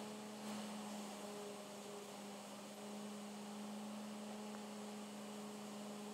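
Steady low electrical hum with a faint hiss underneath, unchanging throughout.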